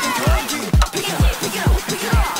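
Electronic music with a deep kick drum beating about twice a second.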